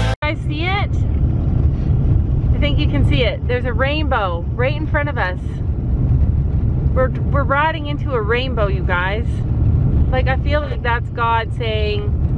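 Steady low rumble of a car driving, heard from inside the cabin, with voices talking over it at intervals.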